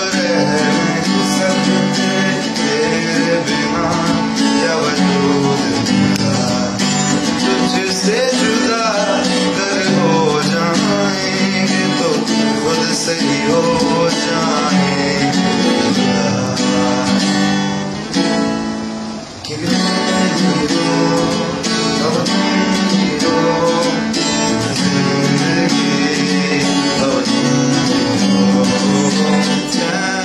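A man singing to guitar accompaniment, with the music dipping briefly about two-thirds of the way through.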